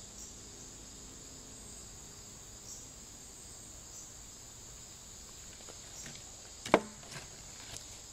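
Insects chirring steadily in a high, even band, with a single sharp click a little before the end.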